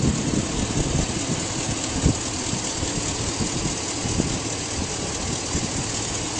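2006 Chevrolet Silverado 2500's 6.0-litre Vortec V8 idling steadily, heard close up under the open hood, running smooth.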